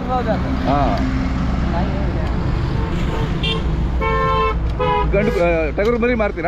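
A truck passing close with a steady low engine rumble, and a vehicle horn sounding one steady tone for about a second after the midpoint, then a shorter toot. Short rising-and-falling voice calls come near the start and again near the end.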